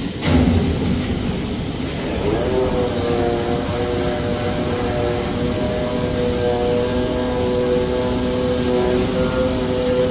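Automatic glue-laminating toilet paper making machine running: a steady mechanical noise with a knock just after the start. About two seconds in, a motor whine rises in pitch and then holds steady, joined a second later by a thin high whine.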